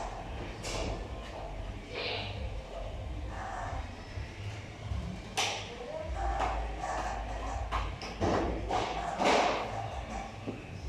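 Indistinct voices in an echoing large room, with scattered knocks and short noisy bursts.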